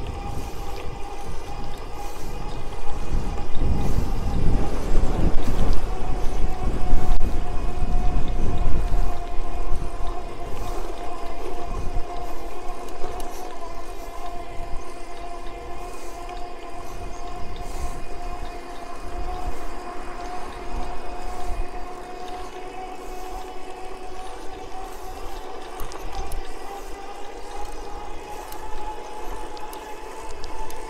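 Electric bicycle motor whining steadily during a ride, its pitch sagging slightly and then rising again as the speed changes. Wind buffets the microphone with a low rumble from about three to nine seconds in, the loudest part.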